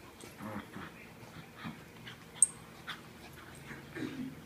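Two small dogs, a Morkie and a Schnauzer, play-wrestling and making short, irregular whimpering play noises and scuffles. A single sharp click comes about two and a half seconds in.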